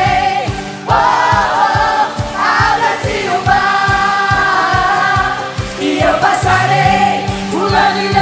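Live gospel worship music: a group of singers singing the chorus over a full band, with a steady driving beat of about four strokes a second.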